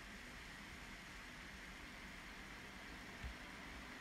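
Very faint steady hiss of room tone and recording noise, with one tiny click a little after three seconds in.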